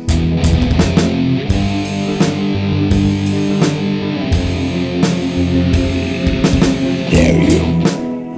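Thrash metal song in an instrumental stretch without vocals: distorted electric guitars and bass riffing over a drum kit, with steady drum hits throughout.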